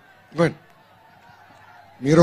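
A single short syllable from a man's voice over a microphone and public-address system, about half a second in, with faint steady background noise for the rest.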